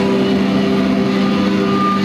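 Distorted electric guitars held through the amplifiers as one sustained, droning chord, with no drums playing.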